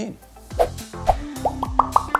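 Animated intro jingle: music with a beat and a quick run of short bubbly pops, each a little higher in pitch, in the second half.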